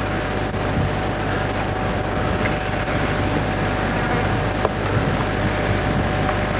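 Steady wind rumble on an open-air camcorder microphone, with tape hiss and a faint steady hum underneath.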